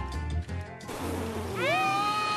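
Cartoon soundtrack: a low steady musical hum for the first second, then a long high-pitched yell that rises in pitch and holds steady.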